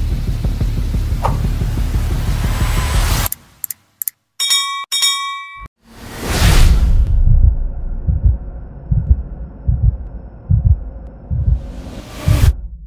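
Intro music and sound effects for an animated title and logo sting: a loud music passage that cuts off suddenly a little over three seconds in, a short bell-like ding after a brief gap, a whoosh swelling up about halfway through, then a beat of deep thumps under a sustained tone that fades away.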